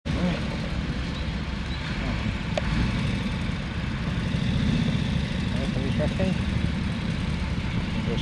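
Engines of old military vehicles running as a convoy moves off across grass, a motorcycle among them, with people's voices in the background.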